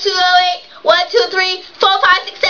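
A young woman's high voice singing in a sing-song, in three short phrases with long held notes.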